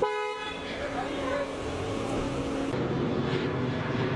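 A brief car horn toot, the loudest sound, over street noise and people's voices.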